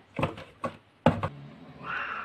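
A cat batting at a wand toy inside a cardboard box: a few sharp knocks and scrapes against the cardboard, then a short meow near the end.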